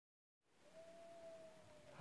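Near silence: faint room hiss, with a faint, thin, steady tone held for just over a second that sags slightly in pitch as it fades.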